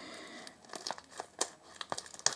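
Plastic packaging crinkling and crackling in the hands as a tight package is worked open, with a few sharp crackles in the second half.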